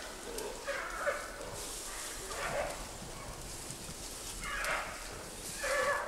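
Wild giant pandas calling in the mating season: about four short calls spaced a second or two apart over a faint steady hiss. These are the growls of males gathered around a female.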